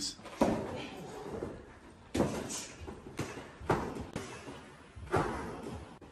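Four sudden thuds, each with a short echoing tail, about a second and a half apart: boxing-glove punches landing in a large, hard-walled locker room.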